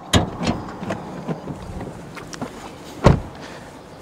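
A sharp click as the bonnet release inside a BYD Seal U is pulled, a few light knocks, then a car door shut with a heavy thump about three seconds in.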